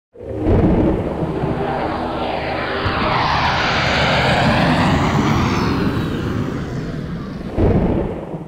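Jet aircraft passing: a loud, steady roar with a hissing sweep that rises and then falls in pitch, and a louder surge near the end.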